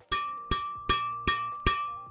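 Hand striking a badminton racket's string bed five times, about 0.4 s apart. Each strike gives a bright, bell-like ping from Mizuno M-Smooth 68S strings strung at 26 lbs mains and 28 lbs crosses.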